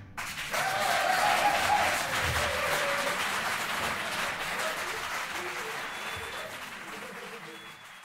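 Audience applause with a few voices calling out, starting suddenly and slowly fading away.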